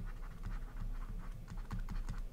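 Stylus tapping and scratching on a drawing tablet as words are handwritten: a faint, irregular run of quick, light clicks.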